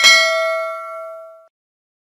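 A single bell ding sound effect for clicking the notification bell, one strike that rings and fades out by about a second and a half.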